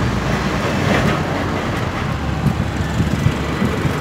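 Street traffic noise: a steady rumble of road vehicles going by.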